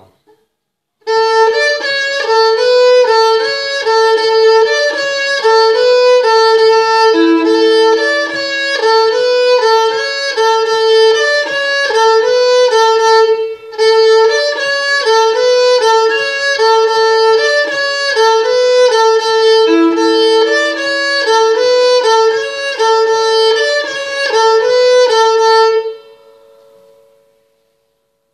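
Bulgarian gadulka bowed in a brisk 2/4 horo melody, the phrase played through twice with a short break between, a lower note held beneath parts of it. The last note fades away.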